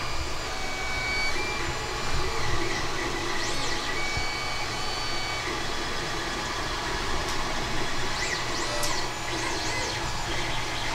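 A 3D printer running: a steady whir from its fans, with a few short rising-and-falling whines from its stepper motors, one about a third of the way in and several near the end.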